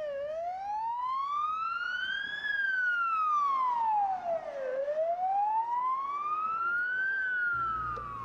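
Police car siren wailing, its pitch sweeping slowly up and down, each rise or fall taking about two and a half seconds.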